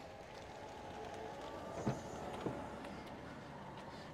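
Faint steady outdoor background hum with two light clicks, about two and two and a half seconds in.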